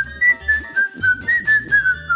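A whistled tune, one clear line of short hopping notes, over a light steady beat of about four pulses a second.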